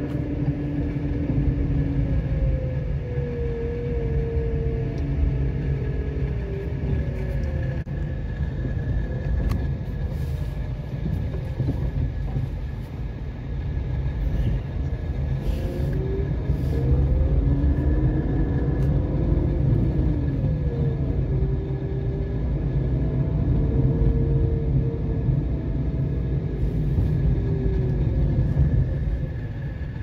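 Car driving along a city street: a steady low rumble of engine and road noise, with the engine's pitch rising and falling as the car speeds up and slows.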